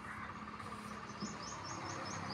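Faint, high-pitched chirping calls, repeated about six times a second, begin a little past a second in over a low steady hum.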